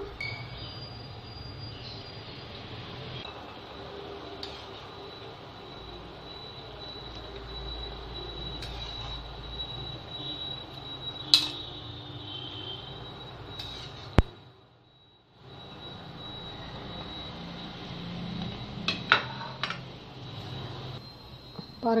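Steady rumbling hiss of kitchen background noise with a thin high whine running through it. A few light metal clinks sound about eleven and fourteen seconds in, and the sound drops briefly to near silence just after the second one.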